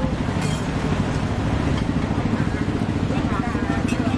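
Steady low engine rumble of street traffic, with indistinct voices in the background.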